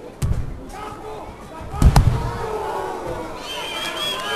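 Bodies hitting a wrestling ring's canvas: a thud just after the start and a heavier double slam just before two seconds in, the loudest thing, as the ring boards boom under the impact. Crowd voices shout and call out throughout.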